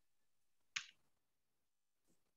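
Near silence over a video call, broken once by a single short, sharp click about three quarters of a second in.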